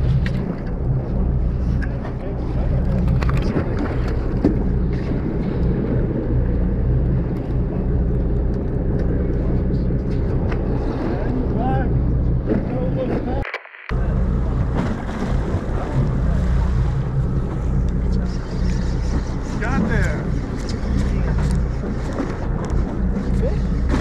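A boat's engine idling steadily, a low even hum, with faint voices in the background. The sound breaks off for a moment about halfway through.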